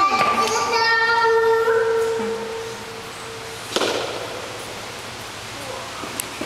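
A child's voice holding one long sung note for about three and a half seconds, with a slight lift in pitch partway through. Just before the fourth second there is a short sharp knock.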